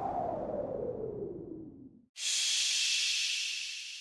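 Title-sequence sound effects: a falling sweep that fades out over the first two seconds, then a sudden steam-like hiss that slowly dies away.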